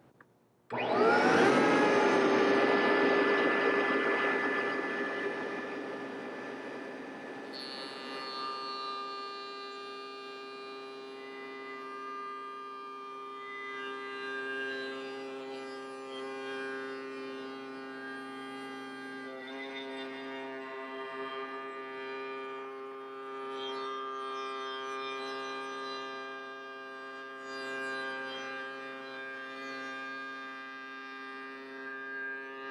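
A router in a router table is switched on about a second in and whines up to speed, then runs steadily with a horizontal panel-raising bit cutting the curved edge of an arched wooden panel; the level swells and dips a little as the panel is fed.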